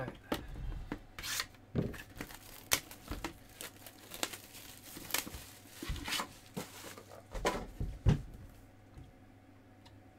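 Plastic shrink-wrap torn and crinkled off a sealed trading card hobby box, then a paper insert and the cardboard box handled: a busy run of tearing, crinkling rustles and light knocks that eases off near the end.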